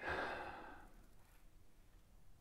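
A man's sigh: one audible breath out at the start, fading over about a second.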